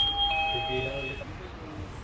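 Two-tone door chime going 'ding-dong': a higher tone, then a lower one about a third of a second later, both ringing out and fading within about a second.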